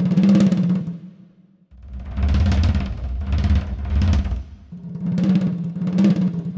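Sampled drum kit from the 8Dio Aura Studio Percussion library playing tempo-synced grooves at double tempo, a rapid-fire stream of drum rolls that is almost too fast. A swelling roll at the start breaks off about a second and a half in, a heavy passage of low drums follows, and a second roll swells up near the end.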